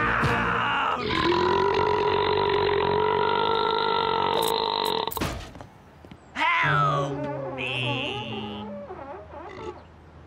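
A man's yell, then one long, drawn-out cartoon burp held steady for about four seconds. After a short lull, a man gasps and groans in disgust.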